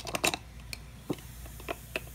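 Irregular sharp clicks and light crackling from a glass jar where a seashell fizzes in diluted muriatic acid, the acid dissolving the shell's calcium carbonate, while metal tongs grip the shell against the glass.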